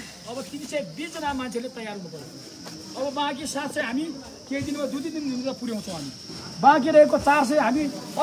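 A man speaking in a raised voice to a crowd, in phrases that grow loudest near the end, over a steady high hiss.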